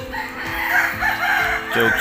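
A rooster crowing once, a long wavering call.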